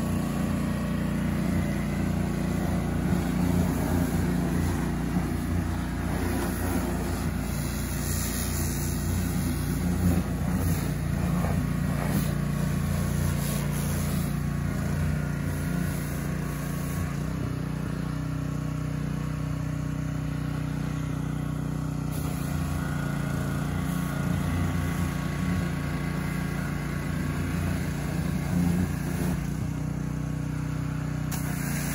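Small petrol engine of a van-mounted pressure washer running steadily at a constant speed, with water spraying from the wand.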